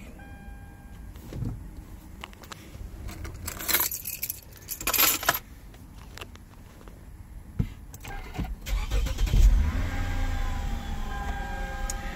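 A short electronic chime, two brief jangling rattles around four and five seconds in, then the 2007 Lexus GS350's V6 cranking and catching about eight and a half seconds in and settling into a steady idle, with a steady electronic warning tone joining near the end. The car is started without a power-steering reset, a start that brings up the P/S fault.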